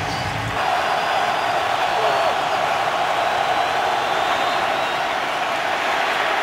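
Football stadium crowd making a steady din of cheering and noise, building a little under a second in.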